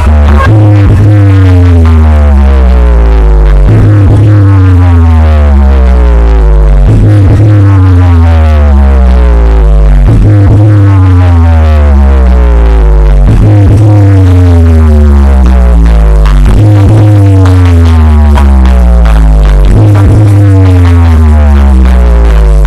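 Electronic DJ track played at full volume through a large competition sound system. A heavy bass note returns about every three seconds, each time under a cluster of falling pitch sweeps, and the recording is close to clipping.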